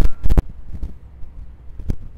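Footsteps of the person filming walking on asphalt: a few sharp steps near the start and one near the end, over a low rumble of wind on the microphone.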